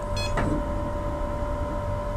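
A short electronic beep from the UP Mini 2 3D printer's touchscreen, confirming the press of its Calibrate option, about a fifth of a second in. Under it runs a steady hum with faint steady tones.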